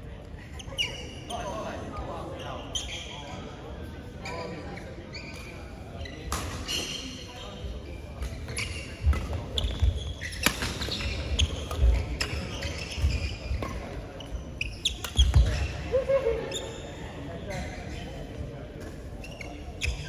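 Doubles badminton rally: a quick string of sharp racket strikes on the shuttlecock mixed with players' feet thumping on the court, starting about six seconds in and running until shortly before the end, in a large sports hall.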